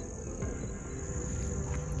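A steady, high-pitched chorus of insects singing in a garden, over a low outdoor rumble.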